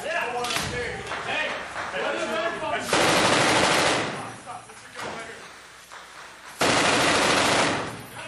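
Two long bursts of automatic fire from a belt-fed machine gun shot from inside a room, each lasting about a second, the second coming about three and a half seconds after the first. Men's voices are heard before the first burst.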